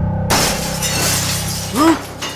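Glass-shattering sound effect: a sudden crash about a third of a second in, its bright tinkling fading over about a second, over a steady music bed.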